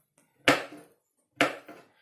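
Kitchen knife chopping a pickled cucumber on a cutting board: two sharp knocks about a second apart.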